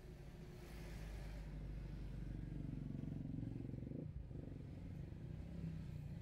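Low, muffled engine rumble of slow-moving traffic heard from inside a car, with a tour bus and motorcycles moving close alongside. The rumble swells in the middle and dips briefly about four seconds in.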